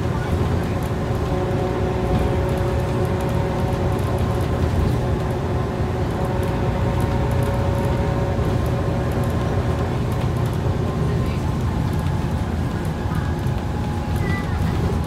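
Inside a moving Scania OmniCity bus: the steady low rumble of its five-cylinder diesel engine, drivetrain and road noise, with a steady whine at several pitches that fades in the last few seconds.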